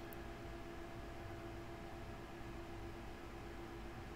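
Faint steady room tone: a low hum with one steady tone and an even hiss, unchanged throughout.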